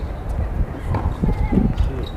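Tennis ball being hit back and forth in a rally, heard as a couple of sharp racquet pops about a second apart, over a steady low rumble and nearby voices.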